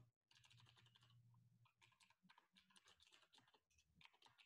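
Very faint computer keyboard typing: a run of irregular, quick key clicks, barely above silence.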